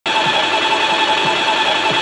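Graco ES1000 electric line striper's paint pump running without priming: a steady whine with a low knock roughly twice a second. This is the dreaded "no-prime" sound, the sign of a failing pump that is due for replacement.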